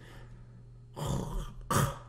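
A man clearing his throat: a soft rasp about a second in, then a sharper one near the end.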